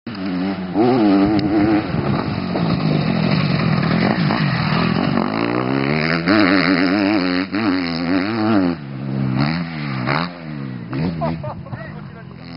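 Motocross bike engine being ridden hard on the track, its pitch repeatedly climbing and dropping as the throttle is opened and shut through gear changes, corners and jumps.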